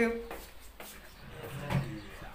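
A few faint clicks and knocks from something being handled, like a door or a cupboard, with a low rumble near the end, right after the end of a woman's spoken word.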